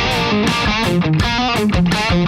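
Electric guitar played through a Friedman BE-OD overdrive pedal into a vintage blackface Fender Bassman head, with overdriven notes changing quickly and sharp pick attacks.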